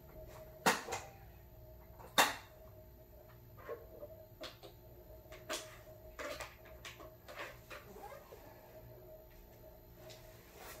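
Handling noise from a dome tent and camping gear: two sharp knocks about a second and a half apart, then scattered lighter clicks and short rustles, over a faint steady hum.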